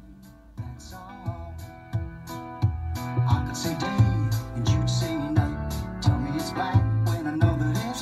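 A song with guitar and a singing voice playing through a car's factory radio speakers, sent from a phone over an FM transmitter. It grows louder over the first three or four seconds as the radio's volume knob is turned up, then plays on at a steady level.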